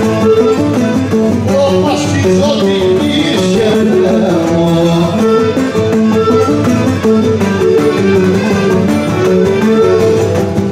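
Live Cretan folk dance music, played loud and steady: a bowed string melody over strummed plucked-string accompaniment.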